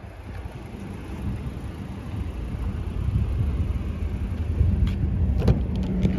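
Low rumbling outdoor background noise that grows steadily louder, with a few sharp clicks near the end as the SUV's front door handle is pulled and the door unlatches and swings open.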